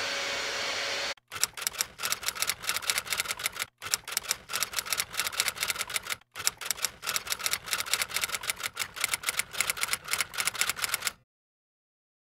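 A steady rushing noise cuts off about a second in, followed by rapid clattering clicks like fast typing, in three long runs broken by brief gaps; the clatter stops abruptly near the end.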